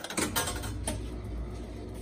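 A 1934 Exhibit Supply Novelty Merchantman coin-operated crane machine starting with a click and then running with a steady low hum and light mechanical clatter as its claw lowers on its cable.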